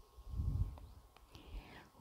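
Quiet pause holding a faint breath noise on the microphone in the first second, followed by two soft clicks.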